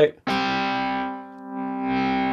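Electric guitar through an amp-simulator rig with overdrive: one chord picked about a quarter second in and left to ring. Its distortion fades around the middle and swells back as the drive amount is swept down and up with a keyboard pitch lever mapped to it.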